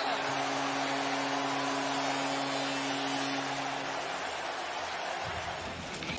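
Arena goal horn sounding one long, steady low blast over crowd cheering after a home-team goal. The horn stops about four seconds in, and the cheering carries on.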